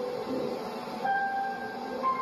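Grand piano played slowly: held notes ring and fade, and a new note is struck about a second in.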